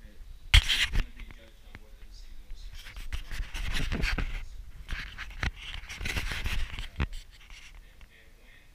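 Rustling and handling noise from a moving action camera, with a sharp knock about half a second in and a few clicks later on.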